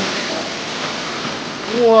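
A steady rushing noise like pouring water from an anime fight scene's sound effects, then a man exclaims "whoa" right at the end.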